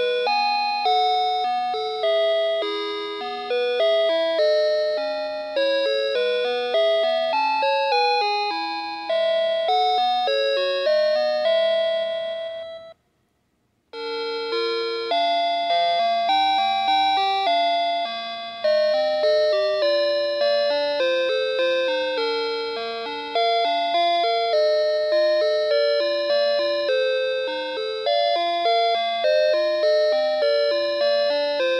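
Playskool Storytime Gloworm toy playing lullaby melodies in plucked, chime-like electronic notes. About halfway through, one tune stops, there is a second of silence, and another tune begins.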